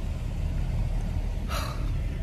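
Steady low rumble of a car's road and engine noise heard inside the cabin while driving, with one short breathy hiss about one and a half seconds in.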